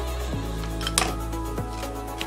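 Background music with steady held bass notes, and a single light click about halfway through.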